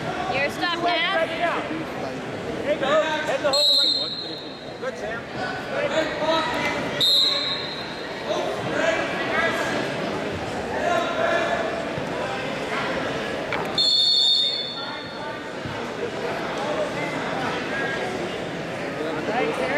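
Voices calling out in a large gymnasium hall during a wrestling bout, coaches and spectators shouting over one another. Three short, shrill, high tones cut through about 4, 7 and 14 seconds in.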